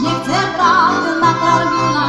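An East Slovak folk cimbalom band playing live, with violin, accordion, cimbalom and double bass, as a woman sings a held note with a wide vibrato.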